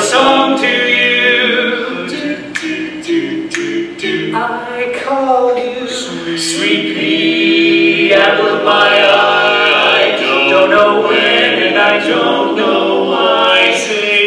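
Male barbershop quartet singing a cappella in four-part close harmony, sustaining chords between sung lines; the sound drops to a softer passage in the middle and swells back to full voice about eight seconds in.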